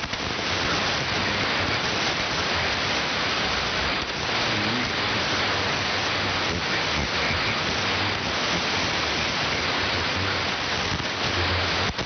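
Loud, steady hiss of static from a shortwave receiver tuned to an AM signal on the 75-metre band, with no intelligible speech coming through. This is a noisy band with poor propagation, which the operator puts down to a G1 solar storm.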